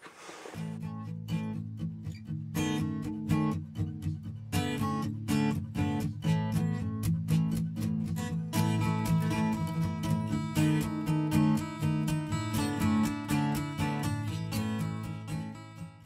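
Background music: a strummed acoustic guitar playing a steady rhythm, starting about half a second in and fading out near the end.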